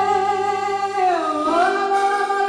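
A woman singing one long held note that dips in pitch about halfway through, with accordion accompaniment.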